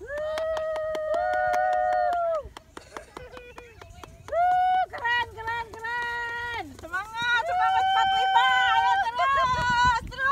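Long, drawn-out, high-pitched shouts and whoops from people sliding down a sand dune on toboggan boards: several held cries of a second or two each, some stepping up in pitch partway through.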